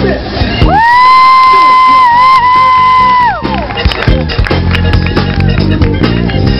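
A male singer's long, high, sung note: he glides up into it, holds it for about two and a half seconds with a brief wobble, then lets it fall, while the band stops under him. The live rock band, with drums, bass, electric guitar and keyboard, comes back in about halfway through.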